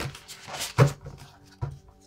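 A deck of oracle cards being handled and shuffled: a few soft slaps and taps of the cards, the loudest just under a second in.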